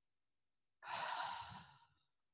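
A woman's single long, audible out-breath. It starts just under a second in, lasts about a second and fades away. It is the exhale of a slow tai chi expansion-and-contraction breathing movement.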